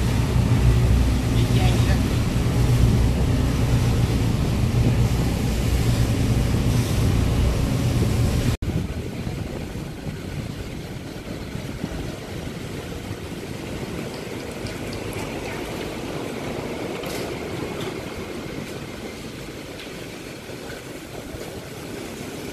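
Boat engine drone with rushing wind and water for about eight seconds, then a sudden cut to quieter, steady background noise with faint distant sounds.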